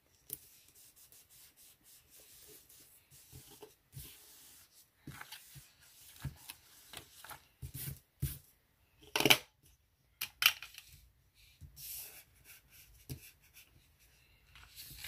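Paper rustling and rubbing as fingers press a planner sticker down and handle sticker sheets and pages. The sounds come in short, irregular scrapes, with two louder rustles about nine and ten seconds in.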